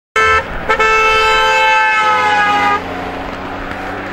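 Car horn sounded by a passing blue Renault Clio V6: two short toots and then a long blast lasting about two seconds, its pitch sagging slightly as the car goes by. After the horn stops, the car's engine is heard more quietly as it drives away.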